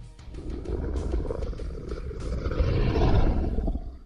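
A deep, drawn-out monster growl for a snarling werewolf, building to its loudest about three seconds in and then fading out, over background music.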